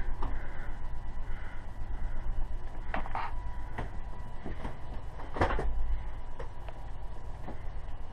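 Fifth-wheel RV slide-out rooms retracting: the slide mechanism runs with a steady low drone, and a handful of clicks and creaks come at intervals as the rooms move in, the loudest about five and a half seconds in.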